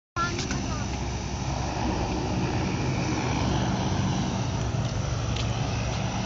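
A steady, low engine drone under a rushing noise, with no change in pitch.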